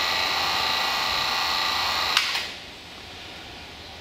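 Electric A/C vacuum pump running steadily, then switched off with a click about two seconds in, its noise dying away within half a second. It is shut down after the gauge valves are closed to test whether the evacuated A/C system holds vacuum.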